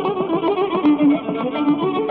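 Carnatic concert music in raga Bilahari: a melodic line that slides between held notes over rapid percussion strokes.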